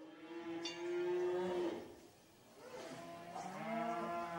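Cow mooing twice: one long moo, then after a short pause a second moo that is still going at the end.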